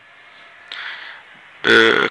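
A short pause in spoken narration: a faint steady hiss with a soft breath, then the voice resumes near the end.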